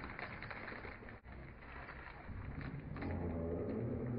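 Low murmur of voices from a small crowd standing close by, rising a little about three seconds in.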